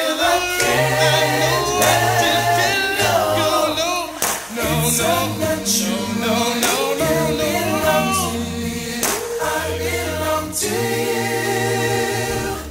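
Vocal group singing a cappella in close harmony, with a low bass voice holding notes beneath the upper parts and no clear words.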